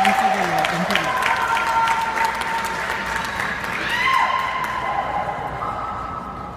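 Audience clapping and cheering for a figure skater on the ice, with the clapping thinning out over the first few seconds. Some long held calls run through it.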